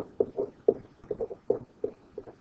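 A stylus tapping and scratching on a pen-tablet writing surface during handwriting: a run of short, irregular clicks, about four or five a second.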